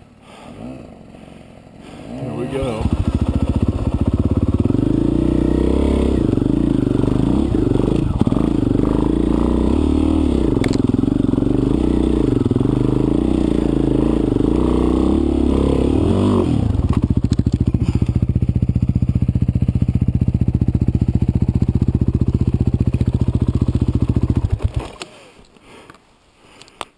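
Dirt bike engine opening up about two seconds in and pulling hard with rising and falling revs as the bike climbs the trail. About two-thirds through it settles into a steady, evenly pulsing low-rev beat, then cuts out abruptly just before the end as the bike goes down on its side and stalls.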